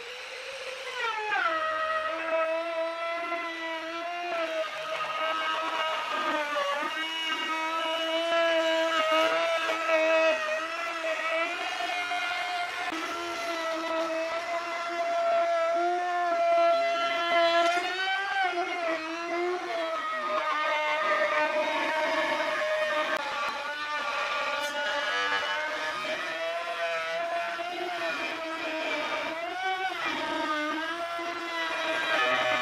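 Electric trim router running while it cuts along the edge of a pine board: a steady motor whine that drops in pitch in the first couple of seconds as the bit bites into the wood, then wavers slightly as the load changes.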